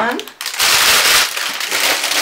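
Plastic shrink-wrap on a pad of watercolour paper crinkling and tearing as it is pulled open. The loud crackle starts about half a second in and eases off a little after a second.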